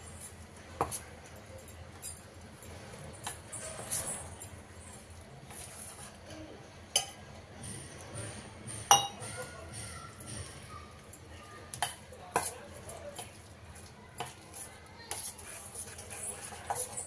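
Metal spoon stirring thick corn-and-gram-flour batter in a stainless steel bowl, with scattered sharp clinks of metal on steel, the loudest about seven and nine seconds in.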